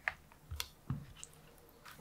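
Metal spoon stirring a thick curry sauce in a ready-meal tray: a few faint, wet squelches and light clicks of the spoon.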